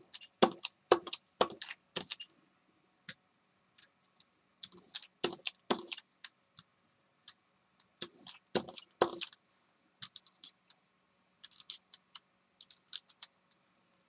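Clusters of short taps and clicks, in bursts separated by brief pauses, as magenta acrylic paint is dabbed onto a gel printing plate in square patches.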